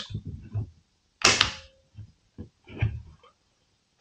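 Hatsan Escort shotgun's trigger mechanism and safety being worked in a function check: one sharp metallic click with a brief ring about a second in, then a few faint clicks.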